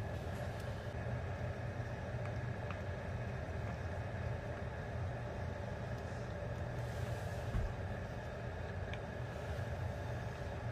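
Steady low mechanical hum with a faint, thin high whine, as of a household appliance running, with a few faint light ticks.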